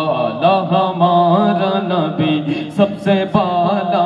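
A man's voice singing a naat, in long, gliding, ornamented phrases held without a pause for breath.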